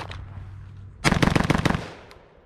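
A rapid string of shots from a Geissele AR-15-pattern rifle in 5.56, starting about a second in and lasting under a second, the shots following each other too fast to pick apart.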